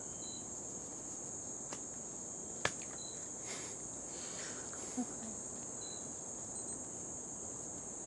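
Steady high-pitched chorus of insects, with a few brief faint chirps and a couple of short clicks.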